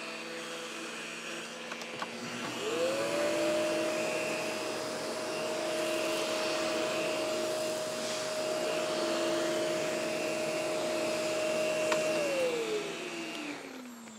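Canister vacuum fitted with a battery-powered EBK 360 DC power nozzle, running on carpet. A steady hum is joined about two and a half seconds in by a rising whine that holds steady, then winds down near the end.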